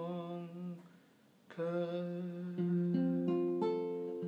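Acoustic folk song outro: a long hummed note over guitar fades out about a second in. After a short pause, acoustic guitar picks a slow run of single notes that ring on over one another.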